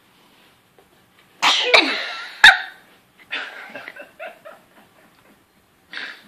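A baby sneezing: one loud sneeze about a second and a half in, followed by a run of shorter, quieter bursts.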